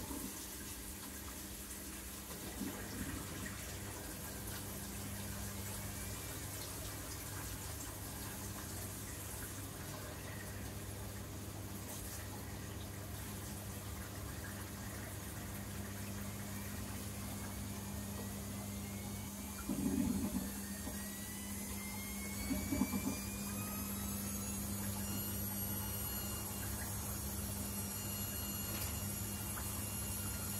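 Water running steadily from a tap into a container, its pitch rising for several seconds from about halfway through as the container fills, then levelling off. A steady low hum runs underneath, with two short knocks about two-thirds of the way in.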